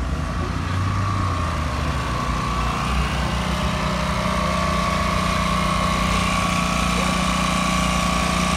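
A small engine running steadily, an even hum that holds at one pitch and grows slightly louder about three seconds in.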